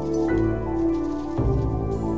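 Electronic ambient music: sustained synthesizer chords that shift to a new chord about every second, over a faint high hiss.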